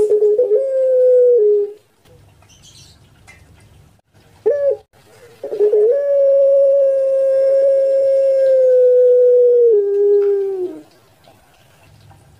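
Puter pelung, a Barbary (ringneck) dove bred for its long voice, cooing in its cage: a short coo, a brief note, then one long drawn-out coo held about five seconds that steps down to a lower pitch just before it ends.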